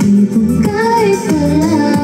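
A woman singing into a handheld microphone over backing music, the vocal line coming back in after a short break and holding long, bending notes.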